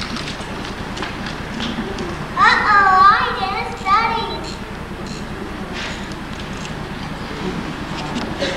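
A young child's high, piping voice calls out a stage line with swooping pitch, a couple of seconds in and again briefly about four seconds in. Under it is a steady hum and hiss of the auditorium through a distant microphone.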